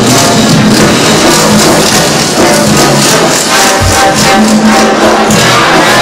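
Upbeat show-tune music from a show choir's live band, played loud and steady with a driving percussion beat and a low bass hit about four seconds in.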